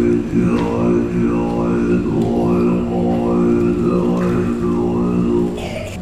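A Tibetan Buddhist monk chanting in a deep, steady drone, the vowel sound sweeping up and down about once a second. Near the end the chant breaks off.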